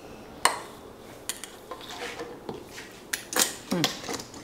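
Metal spoon clinking against a glass mason jar, with a handful of sharp clicks and taps, the loudest about half a second in, as the metal lid is set on and screwed down.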